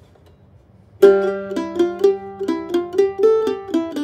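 F-style mandolin, flatpicked, playing the opening two measures of a fiddle tune's C part in C major, starting about a second in. The open G string rings under a slide up to G on the D string, then a run of single eighth-note melody notes follows.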